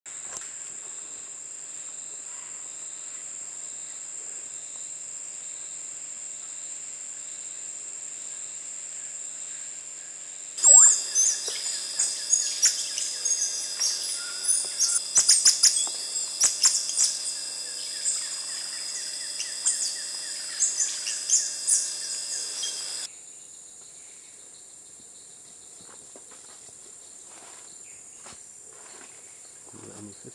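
Rainforest insects holding a steady high-pitched drone. About a third of the way in, a much louder passage starts: many sharp high chirps and calls over the drone, with a faster pulsing trill underneath. It cuts off suddenly near the end, leaving only a quieter insect drone.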